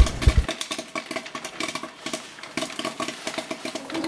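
Food frying in hot oil in a pan on an electric stove: a dense, irregular crackle, with a couple of low knocks from the pan in the first half second.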